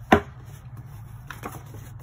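Paper inserts and a user-manual booklet being handled in a cardboard box: a single sharp knock just after the start as the booklet meets the surface, then softer rustles of paper sheets about a second and a half in, over a low steady hum.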